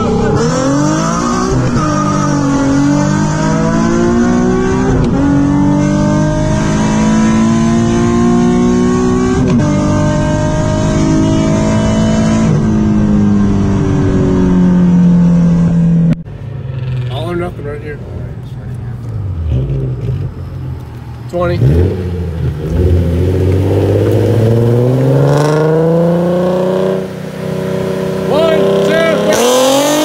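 Modified Nissan VQ37 V6 at full throttle heard from inside the car, the revs climbing through each gear and dropping at upshifts about 2, 5, 9 and 12 seconds in. Just after halfway the throttle closes and the sound falls sharply, then the engine runs at lower revs that sink and rise again.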